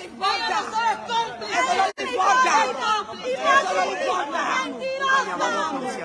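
Several people talking at once, their voices overlapping. The sound drops out for an instant about two seconds in.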